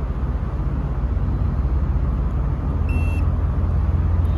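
A short electronic beep about three seconds in from an Autel MaxiTPMS TBE200 laser tread-depth gauge, marking a completed tread-depth reading. It sounds over a steady low rumble.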